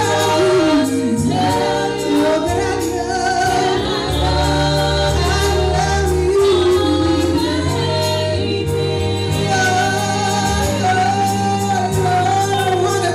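Gospel vocal group of women and a man singing into microphones over instrumental accompaniment with steady held bass notes.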